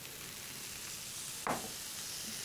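Beans, garlic and spices sizzling steadily in a hot frying pan just after a splash of water was added, stirred with a wooden spoon. A single brief knock about one and a half seconds in.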